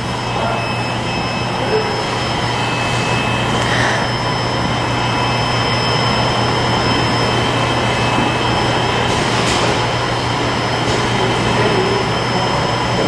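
SWF TF600VK automatic tray former running: a steady machine hum and hiss with a faint high whine, and a couple of faint knocks.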